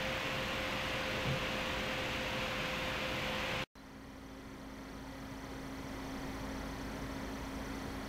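Two MSI Twin Frozr II graphics-card cooler fans running under load: a steady airy whoosh with a faint hum. About three and a half seconds in the sound cuts off abruptly and the GTX 560 Ti reference cooler's fan takes over, quieter at first, with a lower steady hum, and grows louder over a few seconds.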